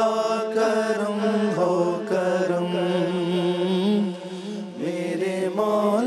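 Several men's voices chanting a devotional Islamic recitation together, unaccompanied. Long held melodic lines move over a steady low held note, with a short dip in loudness a little after four seconds.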